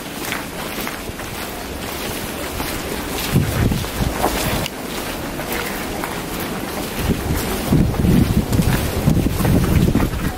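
Wind buffeting the camera microphone, with low rumbling gusts about three and a half seconds in and more strongly over the last three seconds.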